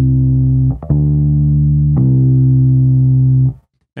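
Electric bass guitar played with pull-offs: each plucked note is pulled off to a lower note on the same string, the second note sounded by the fretting finger alone without a new pluck. A ringing note stops just under a second in, a fresh pluck follows about a second in and is pulled off to the lower note about two seconds in, which rings until it is stopped about half a second before the end.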